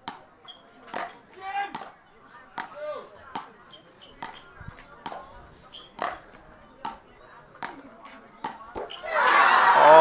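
Road tennis rally: a ball struck back and forth with wooden paddles and bouncing on the paved court, a string of sharp knocks every half second to a second, with faint crowd voices between. About nine seconds in, a loud burst of crowd noise breaks out as the point ends.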